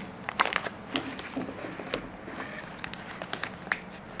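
Plastic packaging (antistatic bags and bubble wrap) crinkling and rustling as it is handled, with irregular sharp crackles.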